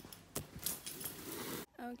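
Two sharp clicks, then about a second of rustling and jingling handling noise that cuts off suddenly; a woman starts speaking just before the end.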